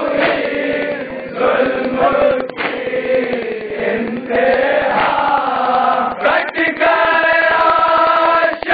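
A group of men chanting a nauha, a Shia lament, in unison, with the beat of hands striking chests (matam) under the voices. The chant moves in held phrases that break and restart every second or two.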